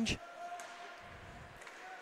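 Faint ice hockey rink ambience between commentary lines: a low, even arena noise with a faint steady hum and a few weak knocks from play on the ice.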